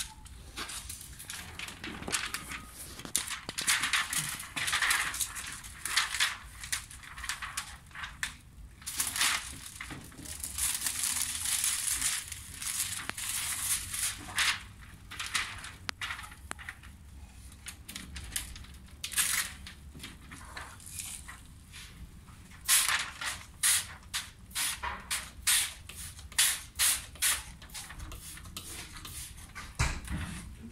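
Plastic window tint film crinkling and crackling as it is handled and pressed against car door glass, in irregular rustles, with a quicker run of sharp crackles, about two a second, near the end.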